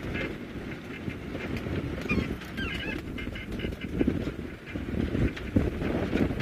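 Egyptian geese honking, a run of short repeated calls in the middle, over the low steady running of an open game-drive vehicle on a dirt track.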